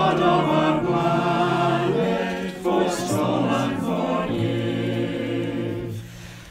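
Virtual choir of mixed amateur voices singing a slow hymn with keyboard accompaniment. There is a short break between phrases about two and a half seconds in, and the last phrase ends on a long held chord with a steady low bass note.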